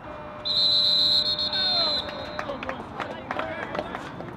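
A referee's whistle blown in one long, shrill blast of about a second and a half, starting about half a second in. Voices calling out follow.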